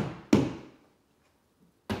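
Small hammer tapping plastic drywall anchors into holes in drywall, each tap a short dull knock. Two taps come about a third of a second apart, then a pause, then another tap near the end.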